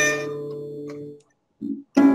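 Melodica note fading out over a ringing acoustic guitar chord, which decays. The sound drops out briefly, then the guitar is strummed again near the end, heard over a video call.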